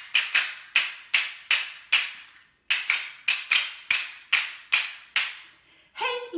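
A pair of small cup-shaped metal hand cymbals struck together in a steady rhythm, about two and a half strikes a second, each strike ringing out high and dying away before the next, with a short break about halfway through.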